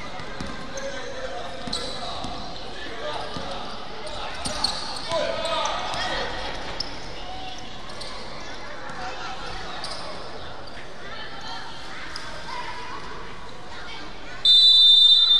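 A basketball being dribbled on a hardwood gym floor with players' and coaches' voices echoing in the hall, louder for a few seconds near the middle.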